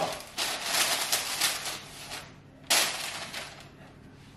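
A sheet of baking paper crinkling as it is pressed down into a metal mixing bowl: a long rustle, then a sharper crackle near the three-second mark.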